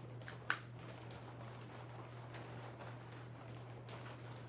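Small adhesive gems being lifted from their sheet with a pick-up tool and pressed onto card: one sharp click about half a second in and a fainter tick a little after two seconds, over a steady low hum.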